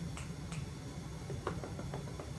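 A few light clicks from a dog's claws on a hardwood floor, the sharpest about one and a half seconds in, over a steady low hum.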